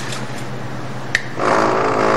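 A click a little over a second in, then a benchtop vortex mixer starts up and runs with a steady motor hum.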